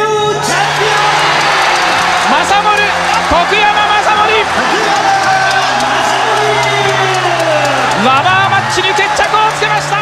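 A boxing arena crowd cheering and whooping, with excited voices, over background music with a steady low note. It breaks off abruptly near the end.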